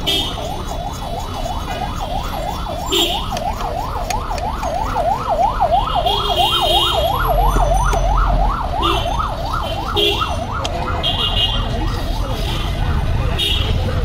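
Emergency vehicle siren in a fast yelp, sweeping up and down about three times a second. It fades away near the end, over the rumble of street traffic.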